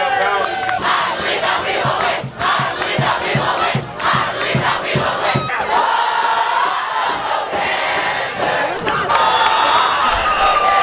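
A student crowd in the stands cheering and yelling all together. For the first half, a steady beat of low thumps runs under it, about two or three a second, and later come long shouts held together.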